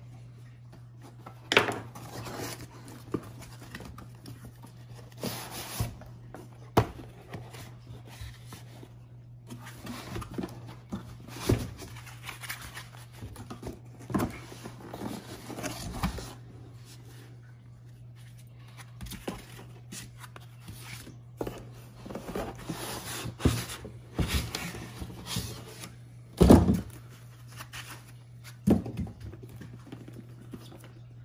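A cardboard shipping carton and its inner boxes being opened and handled on a wooden table: irregular scrapes, rustles and knocks of cardboard flaps and boxes, with the loudest thump near the end. A steady low hum runs underneath.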